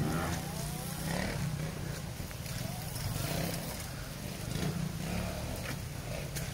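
Small dirt bike engine running along a muddy trail, with a brief rise in revs in the first second, heard from some distance behind.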